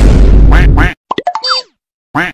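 Comedy sound effects added in editing: a loud noisy burst lasting about a second, with two short pitched calls near its end. Then comes a quick springy effect of rapid clicks and falling pitch glides.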